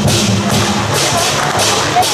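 Taiwanese temple-procession percussion music: loud crashes in a steady beat about two and a half times a second over a low, continuous drone.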